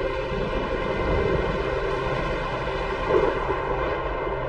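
Dramatic soundtrack: a steady dark drone of sustained tones over a low rumble, swelling briefly about three seconds in.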